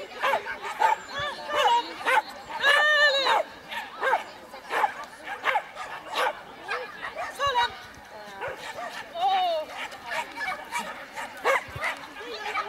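A dog barking and yipping in many short, repeated calls, with one longer call about three seconds in.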